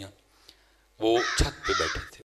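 Crow cawing, starting about a second in after a near-silent pause.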